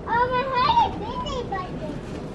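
A child's high-pitched voice calling out for about a second and a half, its pitch gliding up and down, over a faint store background.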